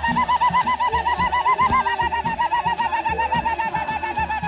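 A high, fast warbling ululation, about nine wobbles a second, its pitch slowly sinking, sung over a steady rattle-and-drum beat.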